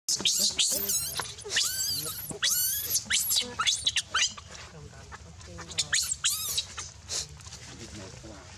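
Baby macaque screaming in distress while an adult monkey grabs and pins it: repeated high, wavering shrieks, densest in the first four seconds, with another cluster about six seconds in.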